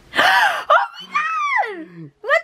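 A young woman gasps sharply in surprise and delight, then lets out a long high 'ohh' that slides down in pitch.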